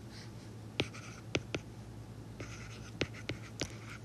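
Stylus writing on a tablet screen: short scratchy strokes with about six sharp taps of the pen tip.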